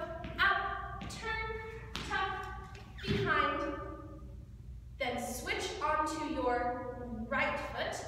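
A woman's voice speaking, with light taps and thuds of Irish dance soft shoes landing on the studio floor several times as a step is danced.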